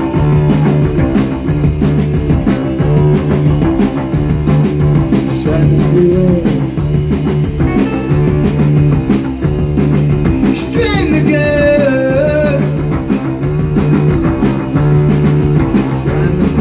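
Live rock band playing loud, psychedelic garage-rock: a steady, fast drumbeat with cymbals, electric bass and electric guitar. A wavering high melody line stands out above the band about eleven seconds in.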